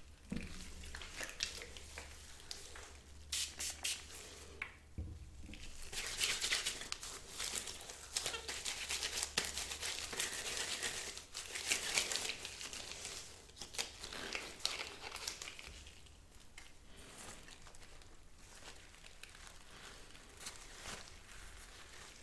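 Crinkling and rustling as gloved hands handle paper tissue and small items, with many light clicks and taps. It is busiest in the first half and dies down to a softer rustle for the last several seconds.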